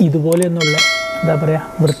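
Notification-bell chime sound effect of a YouTube subscribe-button animation: two quick clicks, then a bright bell ding about half a second in that rings on and fades over about a second, over a man's speech.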